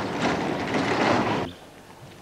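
A steady rushing noise from outdoors, like passing traffic or wind on the microphone, that cuts off abruptly about a second and a half in.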